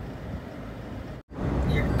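Road and engine noise heard from inside a moving car, a steady low rumble. It cuts out briefly about a second in, then resumes.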